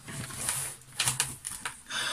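A full cardboard tray of beer cans being set down and handled: rustling with several light clicks and knocks, the sharpest about a second in.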